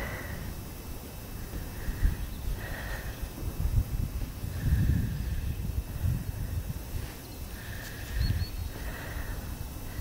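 Wind rumbling and buffeting on the microphone, swelling about four to five seconds in. Faint short high sounds come through it at uneven intervals, about half a dozen times.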